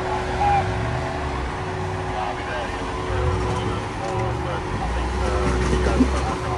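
Jeep Wrangler engine running at a low, steady crawl as the Jeep creeps over rocks, a low rumble with a constant hum over it.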